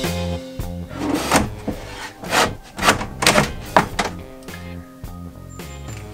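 Background music with a steady bass line, over which a wooden drawer knocks and thunks about five times as it is worked onto its side tracks into a tight-fitting cabinet, the knocks falling between about one and four seconds in.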